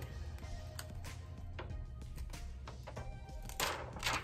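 Quiet background music with a steady low bass. Near the end, a brief crackling rustle as the clear plastic transfer mask film pulls free of the canvas.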